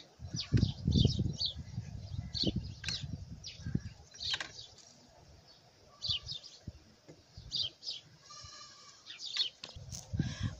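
Water poured from a plastic bottle onto loose soil in a small plastic pot, splashing and soaking in for the first few seconds, while small birds chirp over and over. A short animal call comes near the end.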